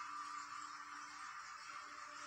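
Soft background music in a pause between spoken phrases: a held low note with a steady hiss, the note dropping out briefly about one and a half seconds in.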